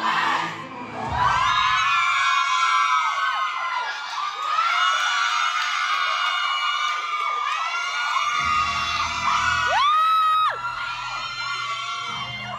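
A roomful of fans, mostly women, screaming and cheering in many overlapping high-pitched shrieks as a countdown runs out. About ten seconds in one voice lets out a long scream that rises and holds, and music comes in underneath shortly before it.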